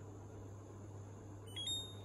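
LG front-load washer-dryer control panel giving a short electronic beep near the end, the signal that the child lock has engaged after its button is held for three seconds.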